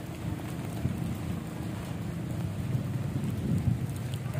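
Low, uneven rumble of wind buffeting the microphone outdoors, with a few louder gusts near the end.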